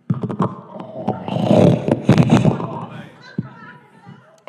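Club audience laughing and clapping, many claps over a mass of laughter that builds to a peak in the middle and then fades away.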